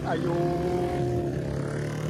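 A motorcycle passing on the road, its engine note holding steady for about a second and a half before fading.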